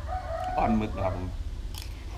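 A rooster crowing once, a single drawn-out call of about a second.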